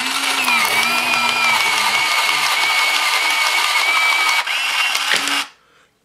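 The battery-powered OfficeWorld Autofeed electric pencil sharpener runs, its motor and blade steadily grinding down a pencil for about five seconds as it automatically pulls the pencil in. The tone shifts about four and a half seconds in, and the motor cuts off suddenly as it auto-stops at the point and ejects the pencil.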